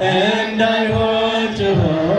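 A choir chanting an Ethiopian Orthodox hymn (mezmur) in unison. The voices hold long notes that move slowly in pitch.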